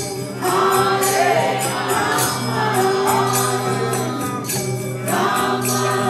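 Group kirtan: many voices chanting together over a sustained harmonium drone, with small hand cymbals struck in a steady rhythm. The singing drops out briefly at the start and again about five seconds in, while the drone carries on.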